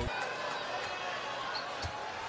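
Basketball arena ambience: a steady crowd murmur, with a basketball bouncing on the hardwood court.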